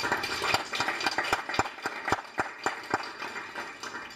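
Audience applauding: a dense patter of clapping at first that thins out into a few separate claps and dies away near the end.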